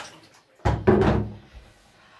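Plastic bucket set down in a bathtub: two quick hollow thuds, a little over half a second in, fading out within about a second.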